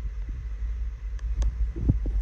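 Low steady rumble with a couple of faint clicks about a second and a half in.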